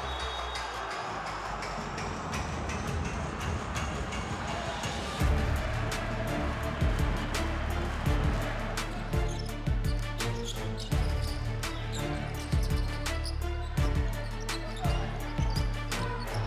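A basketball bouncing on a hardwood court in short, irregular knocks, over arena crowd noise, with a music bed and steady bass underneath.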